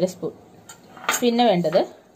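A person speaking in two short phrases, with a steel spoon giving a few light clinks and scrapes against a glass bowl of whole black peppercorns.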